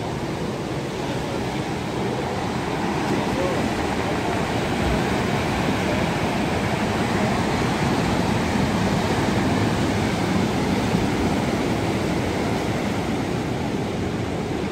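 Pacific surf breaking and washing up a cobble beach, a steady roar of water with no pauses.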